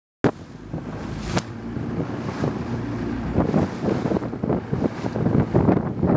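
Wind buffeting the microphone and choppy sea splashing around a small motor launch, with a low steady engine hum underneath. A sharp click at the very start.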